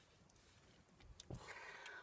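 Near silence, then a faint click and a soft breath in the last half second.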